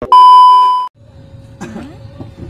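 A TV colour-bar test-tone beep: one loud, steady, high beep just under a second long that cuts off suddenly. After it comes the quiet low rumble of a car cabin.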